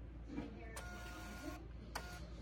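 Niimbot B21 thermal label printer printing a label: a short motor whir lasting under a second as the label feeds out, followed by a sharp click near the end.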